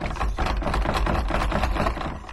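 Fast, continuous rattling and scraping of a metal pen being jiggled in the gap of a locked wooden door against its latch. It starts abruptly and fades out at the end.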